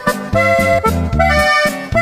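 Instrumental break in a norteño-style corrido: accordion melody in held chords over a repeating bass beat.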